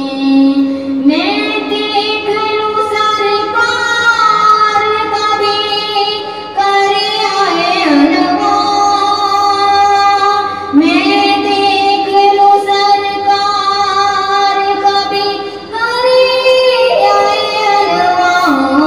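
A female voice singing a naat, long drawn-out melodic lines with gliding notes, in phrases of a few seconds broken by short pauses.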